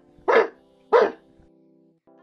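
A dog barking twice, single sharp barks about two-thirds of a second apart, over soft sustained music notes.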